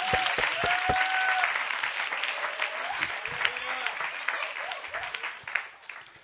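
Congregation applauding after the close of a sermon, many hands clapping at once. The applause gradually dies away over the last couple of seconds.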